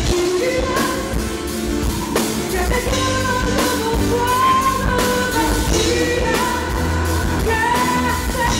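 Live band playing a pop-rock ballad on drum kit, bass and electric guitars, with a sung melody of held notes over it.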